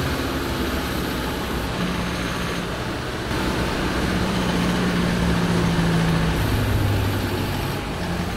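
Mercedes-Benz Unimog UHE 5023's 5.1-litre four-cylinder diesel engine running steadily as the truck drives along a paved road. Its note drops lower about six seconds in.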